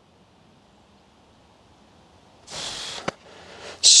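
Near silence, then about two and a half seconds in a half-second scuffing hiss of bunker sand being disturbed, followed by a single sharp click.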